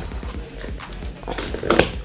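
Cardboard parcel being opened by hand: packing tape and plastic wrap pulled and cut with a cutter knife, giving irregular crackles, scrapes and knocks, a few sharper ones near the end.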